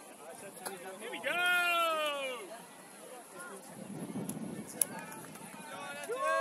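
A person's long drawn-out shouted call, one loud vowel falling in pitch, starting about a second in; a second, shorter shout comes at the very end.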